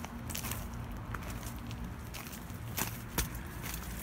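Footsteps of someone running over grass and ground litter with a handheld camera, with scattered sharp clicks and a low, steady rumble of handling noise.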